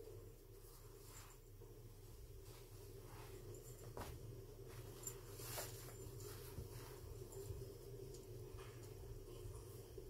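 Faint rustling of baby clothes and soft handling noises as a doll is undressed, with a few small clicks, over a steady low hum.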